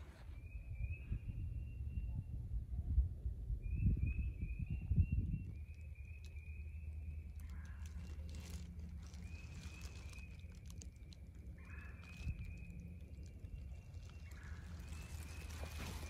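Frogs calling in a spring woodland: a run of trills about a second long, repeating every second or two and overlapping. Low rumbling thumps of wind or handling come through in the first five seconds, with a steady low hum behind.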